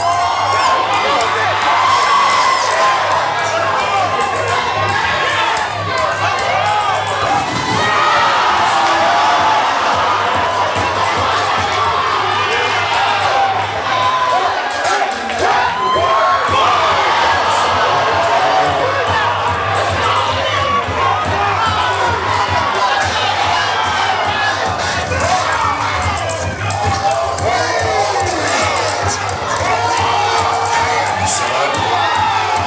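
Crowd of spectators shouting and cheering loudly without let-up, many voices overlapping.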